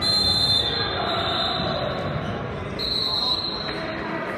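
Referee's whistle blown twice in a wrestling bout: a high, steady blast at the start that fades within about two seconds, then a second blast near the end. Spectators' chatter runs underneath.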